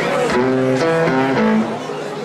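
Electric guitar playing a quick run of a few single notes, the last one lowest.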